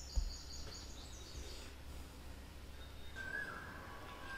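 Faint background noise with a steady low hum, a single click shortly after the start, and faint high chirping tones near the start, then a lower held tone near the end.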